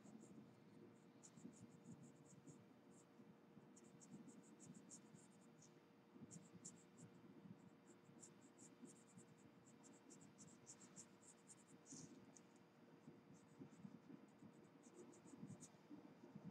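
Graphite pencil scratching faintly on paper in clusters of quick, short shading strokes.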